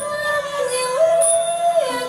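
A young female singer singing a Thai luk thung song through a microphone and PA over backing music, holding a long note that steps up in pitch about a second in and slides back down near the end.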